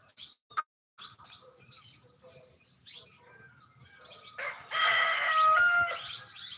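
A rooster crowing once, a loud call beginning about four and a half seconds in and ending on a held note, after a few faint bird chirps.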